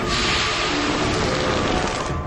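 Cartoon sound effect: a loud, steady rushing hiss that starts suddenly and cuts off about two seconds later, as a giant trash bag is drawn around a ball of space garbage, over background music.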